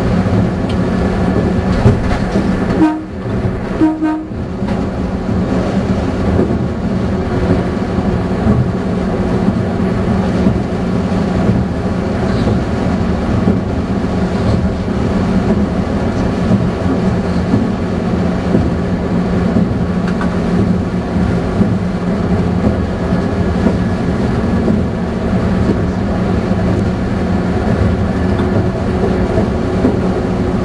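Meitetsu Panorama Car (7000 series electric train) running steadily at speed, heard from inside the car: a continuous hum with steady tones, wheel noise and rail-joint clatter. About three to four seconds in the sound briefly breaks up, with short tones, as an oncoming train passes.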